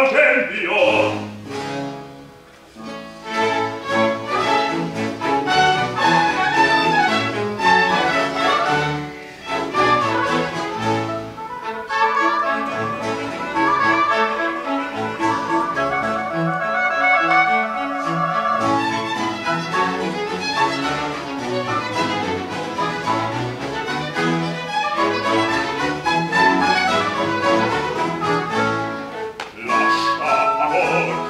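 Small baroque chamber orchestra playing an instrumental passage, led by bowed strings (violins and cello) over harpsichord and lute continuo. The level dips briefly about two seconds in, and the playing then runs on continuously.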